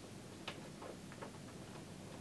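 Small scissors snipping through a ball python eggshell: faint clicks, with one sharper click about half a second in and a few softer ones after it.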